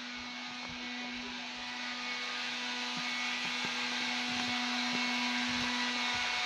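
Electric grinder running steadily with a constant hum, growing gradually louder.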